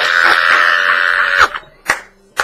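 A man's loud, high shriek held for about a second and a half, followed by two sharp hand claps.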